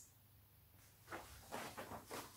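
Near silence for about the first second, then a few faint, brief rustles and soft knocks of handling as a printed paper card is set down.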